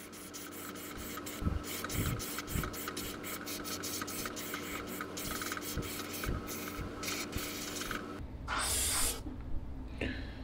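Iwata Eclipse HP-CS gravity-feed airbrush spraying a coat of paint, its hiss broken into many short pulses as the trigger is worked, over a steady low hum. The hum stops near the end, followed by a louder, brighter rush of air lasting about a second.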